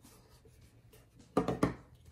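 A tarot card deck and its cardboard box handled over a wooden table: two sharp knocks about a quarter second apart, roughly a second and a half in.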